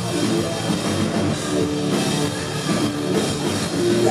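Live hard rock band playing loud and steady: electric guitar, bass guitar and drum kit.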